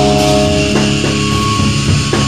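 Hardcore band rehearsing: distorted electric guitar chords ringing over bass and drum kit, the chord changing on a drum hit about three-quarters of a second in.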